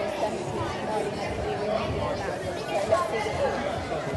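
Many voices talking at once in a large sports hall: a crowd of spectators chattering, with some echo from the room.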